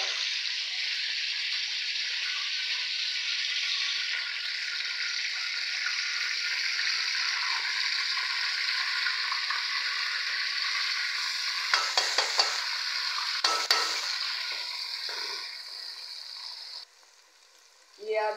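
Chopped onions sizzling steadily in hot oil in a metal karahi, stirred with a spatula that scrapes the pan twice about 12 and 14 seconds in. The sizzle fades and then cuts off shortly before the end.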